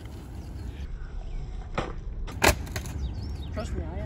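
Skateboard attempting a heelflip on concrete: a tail pop, then a louder clack of the board hitting the concrete under a second later.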